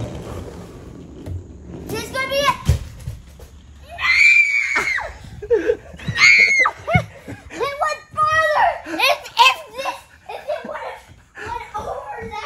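Children shrieking, shouting and laughing excitedly, with a single thump about three seconds in.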